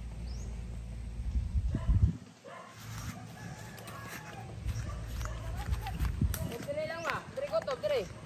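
Outdoor village sound: a rooster crowing near the end over distant voices, with a low rumble underneath and a single loud knock about two seconds in.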